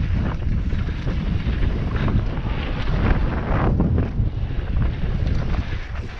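Wind buffeting a helmet-mounted camera's microphone during a fast mountain-bike descent, over a steady rumble of tyres on a dry dirt trail, with scattered brief knocks and rattles from the bike over bumps.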